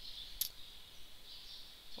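A steady, high-pitched background hiss, with a single sharp click a little under half a second in.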